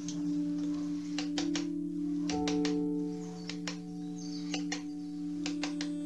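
Ambient background music with steady held synth chords. Over it come sharp clicks in clusters of two or three from a carving tool cutting into wood.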